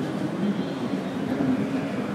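Steady ballpark and city background noise: a continuous low hum of traffic mixed with indistinct distant voices, with no single event standing out.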